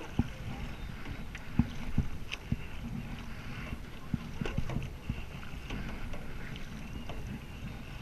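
Kayak paddling: paddle blades dipping and splashing in the water, with scattered sharp clicks and knocks over a steady low rumble.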